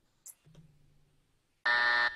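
A game-show wrong-answer buzzer sound effect: one harsh, steady buzz that starts near the end, marking the answer as incorrect.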